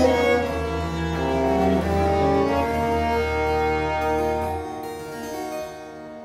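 Early-instrument ensemble of two baroque violins, baroque viola, viola da gamba and harpsichord playing long held, sustained bowed notes over a low bass note. The bass note drops out about three quarters of the way through, and the music thins and grows quieter.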